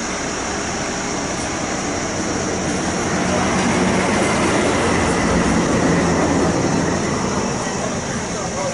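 A heavy vehicle passing close by: a continuous rumbling noise that grows louder through the middle and then eases off.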